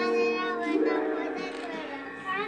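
Children singing over backing music, with a sustained accompaniment note that shifts to a new one less than a second in.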